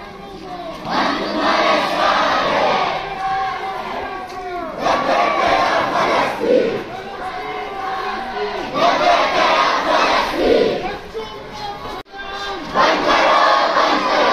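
Large crowd of protest marchers shouting slogans in unison, in repeated loud bursts a second or two apart. The sound drops out for an instant near the end, then the chanting resumes.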